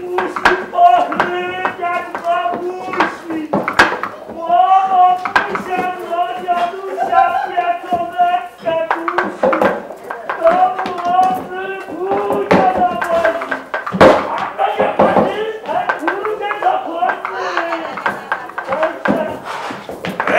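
Several voices talking and calling out, broken by frequent sharp knocks and clacks, the loudest about four seconds in and again near fourteen seconds.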